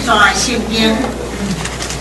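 A woman's voice speaking, trailing off about a second and a half in, over a steady low hum.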